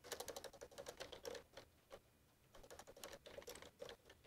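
Faint computer keyboard typing in quick runs of keystrokes: one burst in the first second and a half, a short pause, then another run.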